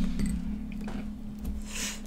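Metal spoon scraping avocado flesh out of its skin, a short soft scrape near the end.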